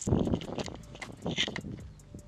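Handling noise from the camera being picked up and moved: a loud bump at the start, then rustling and scattered clicks and knocks.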